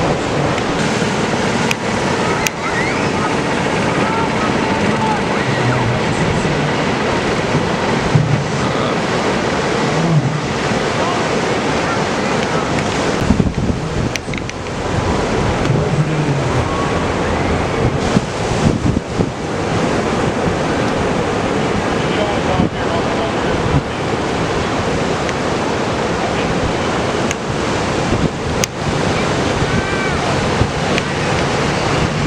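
Ocean surf breaking along the beach, a steady rushing wash of noise, mixed with wind buffeting the microphone.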